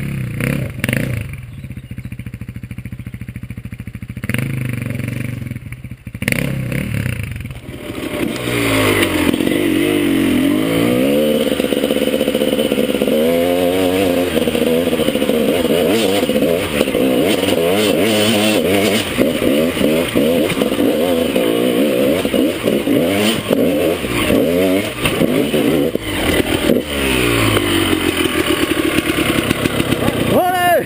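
Dirt bike engine on a steep rocky track: running lower and steadier for the first several seconds, then loud and close from about eight seconds in, revving up and down over and over with the throttle as the bike climbs.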